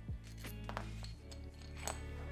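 Background music of steady low sustained notes, under a few sharp light clicks of the metal CPU delid tool being handled and opened; the loudest click comes near the end.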